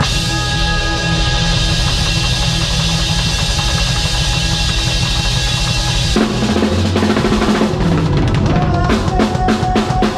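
Drum kit played live with a band, the drums loud and close over the band's held chords. About six seconds in the chords shift, and near the end comes a run of quick, closely spaced drum strokes.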